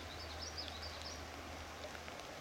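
A faint bird singing a high, warbling phrase for about a second near the start, over a steady outdoor hiss.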